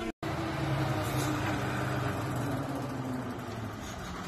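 Fire engine's engine running with a steady low hum, easing off slightly near the end. It comes in after a split-second cut to silence at the very start.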